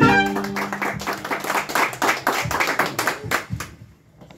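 A small group of people clapping as a mariachi band's song ends on a held final note; the applause dies away shortly before the end.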